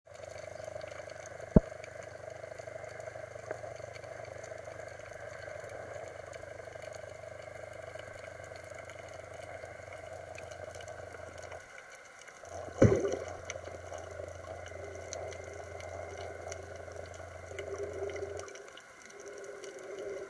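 Muffled underwater sound picked up by a camera held below the surface: a steady wash of water noise with a low hum. A sharp knock comes about a second and a half in, and a louder knock follows about thirteen seconds in.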